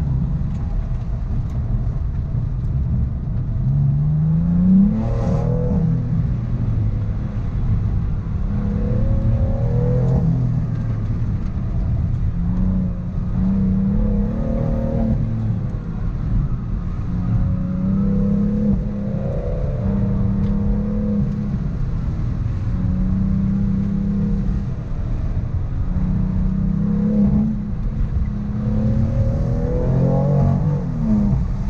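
A 2018 BMW M3's twin-turbo 3.0-litre inline-six, heard from inside the cabin as the car is driven hard through an autocross course. The engine revs up, holds and eases off over and over, every few seconds.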